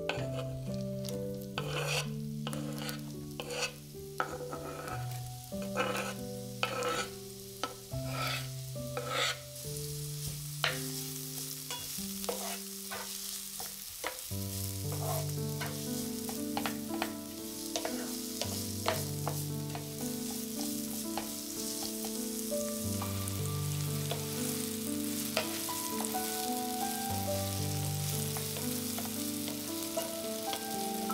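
Chopped onion frying in olive oil in a nonstick pan, stirred with a wooden spatula: the spatula scrapes and taps against the pan in many short clicks while the oil sizzles, the sizzle growing into a steadier hiss about halfway through. Background music plays underneath.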